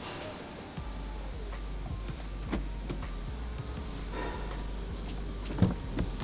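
Background music over the powered tailgate of a 2023 Range Rover lifting open, its electric motor a low steady hum, with a sharp knock near the end.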